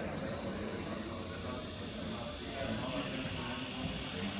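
Electric implant motor and contra-angle handpiece driving a pilot drill into a synthetic bone block: a steady high-pitched whine over an even hiss.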